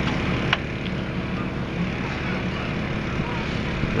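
Steady low background rumble, with one sharp click about half a second in.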